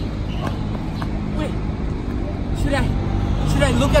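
Steady low outdoor background rumble with faint voices in it; a voice starts speaking near the end.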